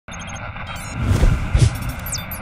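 Sound effects of an animated channel logo ident: four quick high electronic beeps, then a rush of noise and two deep booms close together.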